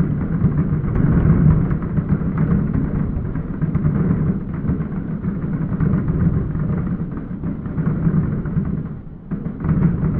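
Fireworks going off in a rapid barrage: booms and crackles packed so close together that they merge into a continuous rumble, dipping briefly near the end before picking up again.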